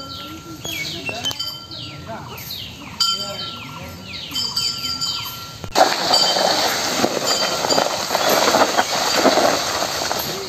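Birds calling with repeated high whistles that fall in pitch. About six seconds in, a sudden change to a louder, steady scraping rustle: a whole banana tree trunk with its dry leaves being dragged along a stony dirt path by an elephant.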